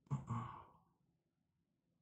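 A man sighing once, a short out-breath with a little voice in it, lasting under a second near the start.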